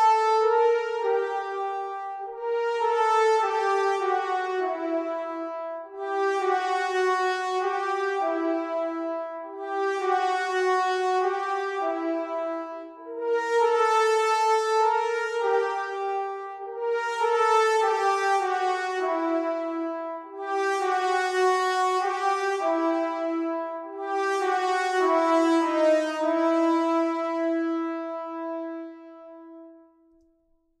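Sampled solo French horn playing a melody from a MIDI mockup. The tune moves in short phrases of about two seconds that step downward, each starting strong and fading. The line is played twice over and ends on a long held low note.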